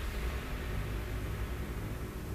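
Low, steady rumble from a TV drama's soundtrack, a dark drone of score or ambience under a tense scene.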